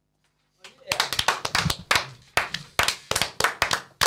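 A small group of people clapping their hands in a small room. The clapping starts about half a second in, after a brief silence, as a run of sharp, uneven claps.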